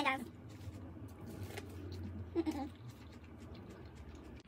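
A person biting into and chewing elote, corn on the cob coated in cream and cheese, with many small wet mouth clicks, and a short voiced 'mm' about two and a half seconds in.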